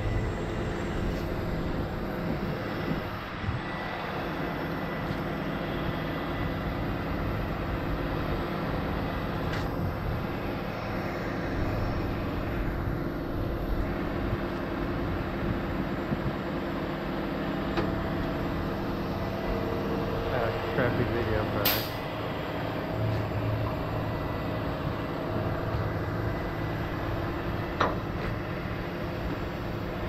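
Heavy rotator wrecker's diesel engine running steadily while its boom holds and lifts the loaded trailer, with a few sharp metallic clicks, the loudest about two-thirds of the way through.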